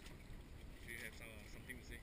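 Faint wind and water noise, with a faint voice briefly about a second in.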